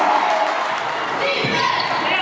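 Indistinct crowd voices echoing in a gymnasium, with a basketball bouncing once on the hardwood floor about one and a half seconds in.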